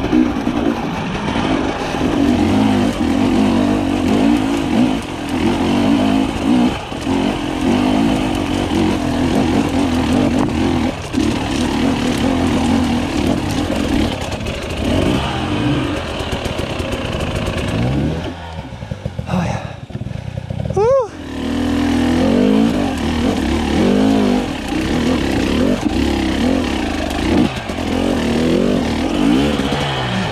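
Husqvarna TE300i two-stroke enduro motorcycle engine being ridden off-road, revving up and down with the throttle. About two-thirds through it drops low for a couple of seconds, then revs sharply up.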